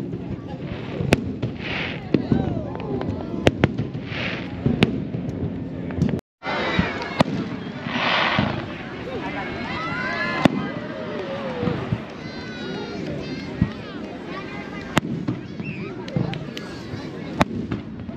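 Aerial firework shells bursting, a sharp bang every few seconds, over the chatter of a crowd of spectators. The sound cuts out completely for a moment about six seconds in.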